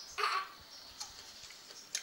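Mouth sounds of a person eating rice noodles by hand: a short burst of slurping or mouth noise just after the start, then quiet chewing with a few sharp lip-smack clicks.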